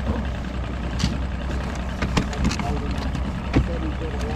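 Boat motor idling with a low, steady hum, while a few sharp knocks and clicks come from gear being handled on the bow deck.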